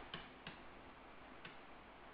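Near silence broken by three faint, short ticks of a stylus on a writing tablet as a note is written.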